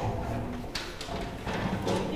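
Handling noise from the camera being moved against fabric: low rubbing and rumble on the microphone, with a sharp knock about three-quarters of a second in and another near the end.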